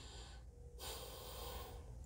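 A faint breath drawn in, about a second long, a little under halfway through, over a low steady room hum.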